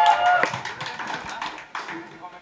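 A short held cheer from the crowd, then scattered, uneven hand claps from the small audience.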